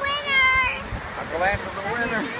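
A young girl's high-pitched wordless cry: one drawn-out falling wail in the first second, then shorter vocal sounds near the end.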